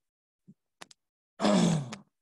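Call audio that is near silent apart from a few faint clicks, then a man's short grunt-like vocal sound with a falling pitch, lasting about half a second near the end.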